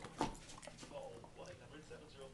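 A dog chewing popcorn: a quick run of short, sharp crunches and mouth clicks, the loudest about a fifth of a second in.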